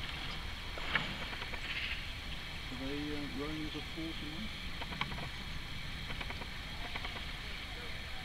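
A steady low motor hum. A faint distant voice calls briefly about halfway through, and there are a couple of light knocks.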